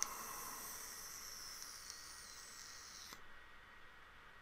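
Faint steady hiss of a puff drawn on an electronic cigarette, air pulled through the firing atomiser as the e-liquid vaporises; it cuts off suddenly about three seconds in.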